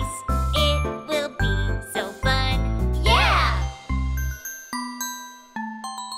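Children's song: a sung line over a bouncing bass backing. About four and a half seconds in the backing stops and ringing chime notes sound one at a time, each a step lower than the last.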